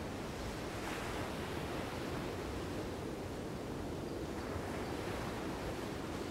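Ocean waves breaking and washing ashore: a steady rushing surf, with one wave breaking louder about a second in.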